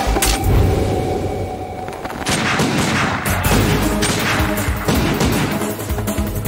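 Film action soundtrack: a rapid string of pistol shots over a dramatic background score. The shots come thickest from about two seconds in.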